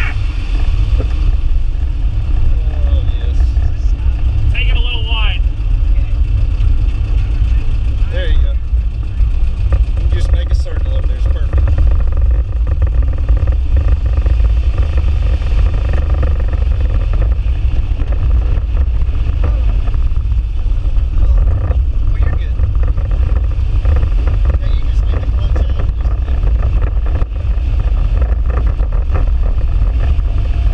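Air-cooled VW Beetle flat-four engine running while the car is driven, heard from inside the cabin together with road noise: a steady, loud low drone.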